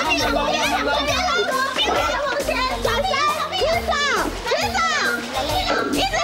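Several people shouting excitedly over one another, with background music playing underneath.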